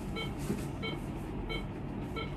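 An electronic beeper in a hospital room sounding three short high beeps about two-thirds of a second apart, over a low steady hum.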